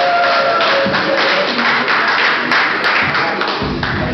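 Audience clapping and applauding, a dense patter of many hands, thinning near the end as a low steady hum comes in.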